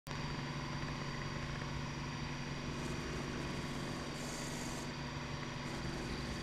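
Milling spindle of a 1998 Shoptask XMTC lathe-mill combo running with a steady hum while an end mill takes very light leveling cuts across the face of a steam-engine connecting rod. A brief high hiss comes about four seconds in.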